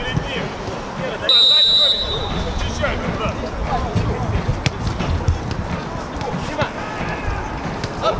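Referee's whistle: one short, steady blast of under a second about a second in, signalling the restart of play. Players shout around it, and there are a few sharp thuds as the ball is kicked.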